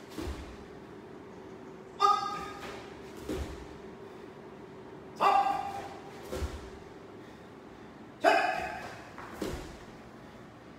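A karate practitioner's short, sharp kiai shouts with his kicks, three times about three seconds apart, each followed about a second later by a softer thump.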